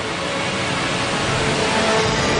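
A loud, steady rushing noise that swells slightly, with music faint beneath it.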